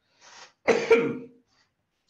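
A man coughs once, a short double cough with two quick bursts.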